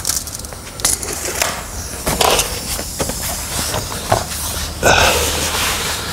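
Hand-work noises: scattered knocks, scrapes and rustling as a person handles a tape measure and hand tools on a concrete shop floor. A longer scraping rustle comes near the end.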